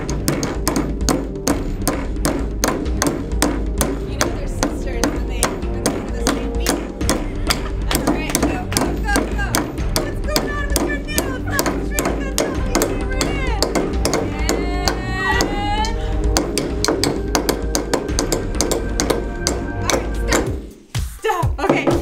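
Hammers striking nails into a wooden block in rapid, repeated blows over background music, with voices calling out midway. The hammering and music stop about a second before the end.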